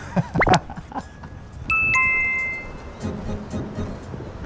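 Editing sound effect: a quick rising swoop, then a two-note chime, a higher ding followed by a lower one that rings out for about a second.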